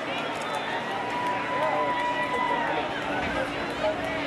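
Parade crowd talking and chattering, with many voices overlapping. A single high note is held steadily for about two and a half seconds in the middle.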